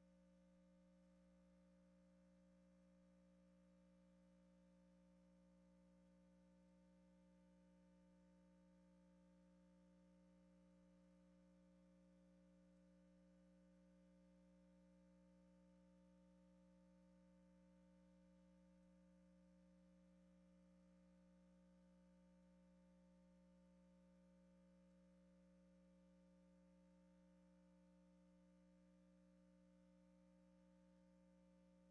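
Near silence: a faint steady hum made of a few constant tones.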